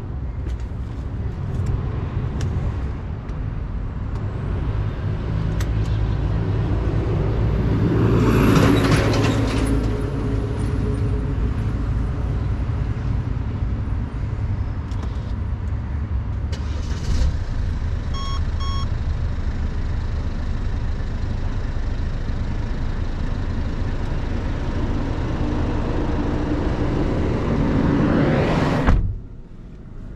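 Steady low outdoor rumble of vehicles and wind on the microphone. A vehicle swells past about a third of the way in, two short electronic beeps sound around the middle, and a thump near the end is followed by a sudden drop to a quieter sound.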